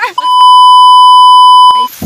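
Censor bleep: a single loud, steady beep about a second and a half long, cutting off abruptly, laid over the speech.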